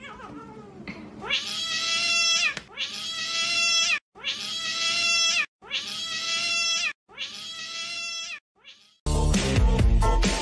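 A cat's long meow, five times in a row, each about a second and a half long and held at one pitch after a brief dip, each cut off abruptly. Music starts near the end.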